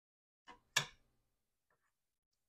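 A spoon taps twice against a small saucepan, a faint tap and then a sharper, louder one; otherwise near silence.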